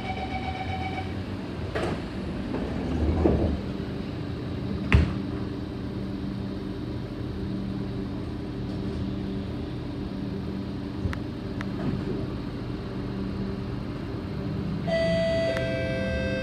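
Door-closing chime, then the sliding doors of a Kawasaki C751B MRT train shutting with a sharp knock about five seconds in. The train then pulls away, its running gear humming steadily. A chime starts near the end.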